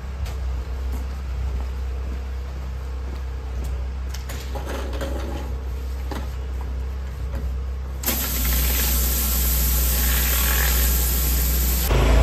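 Engine-driven pressure washer running with a steady low drone; about eight seconds in, a loud hiss of high-pressure water spraying starts and holds until near the end.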